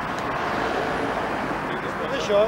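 Road traffic passing close by: a steady rush of tyres and engines that swells slightly in the middle.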